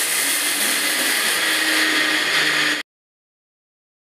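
Electric mixer grinder with a stainless steel jar running steadily; the sound cuts off suddenly about three seconds in.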